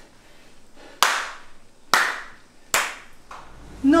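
Three slow handclaps, a little under a second apart, each sharp and ringing briefly in the room: a slow, mocking applause.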